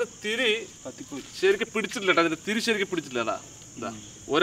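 Crickets making a steady high drone, under louder people's voices talking.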